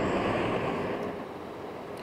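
Road traffic rushing past, with the noise fading about a second in.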